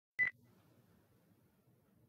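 A single short electronic beep, a fifth of a second in, followed by faint low room hum.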